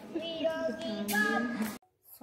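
A person's voice in drawn-out, sing-song tones, cut off abruptly near the end.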